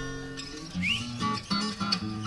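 Acoustic string band of guitars, mandolin and upright bass playing a slow ballad. The instruments hold ringing chords between sung lines, with a short upward slide about a second in.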